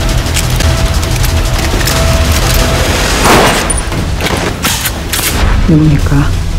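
Trailer sound design: repeated gunshots and heavy booms over a low, driving music bed, with a big swelling whoosh-and-hit about three seconds in. A voice starts just before the end.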